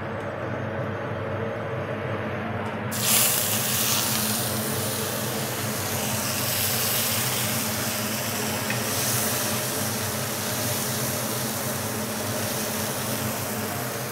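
Marinated pork belly laid into a hot frying pan about three seconds in, then sizzling steadily as it sears. Before that there is only a steady low hum.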